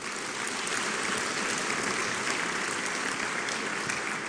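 Seated audience applauding, a steady round of many hands clapping.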